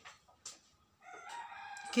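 A rooster crowing: one drawn-out call starting about a second in, after a light click near the start.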